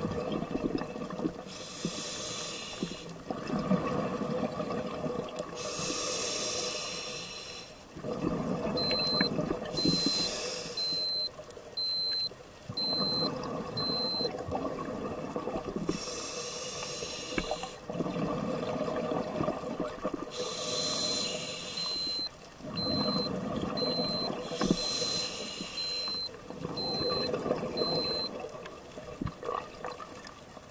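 Scuba diver breathing through a regulator underwater: a short hissing inhale every four to five seconds, each followed by a longer rumble of exhaled bubbles. A high electronic beep repeats about once a second for several seconds, twice.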